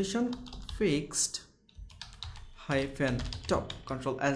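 Computer keyboard being typed on, a quick run of keystroke clicks, with a voice talking over it in places.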